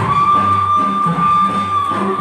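Song music with one long high note held steady for nearly two seconds over a low accompaniment, the note ending just before the singing and beat pick up again.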